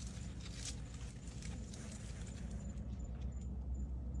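Puppy pawing and tugging at a palm frond over gravel: faint rustling of the leaves and light crunching steps, over a steady low rumble.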